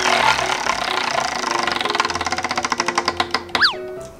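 Wooden prize wheel spinning, the pegs around its rim clicking against the plastic pointer in a rapid run of ticks that gradually slows and stops near the end, over background music.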